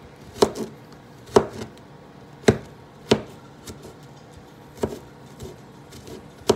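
Kitchen knife chopping garlic on a cutting board: about seven sharp, unevenly spaced strikes of the blade against the board.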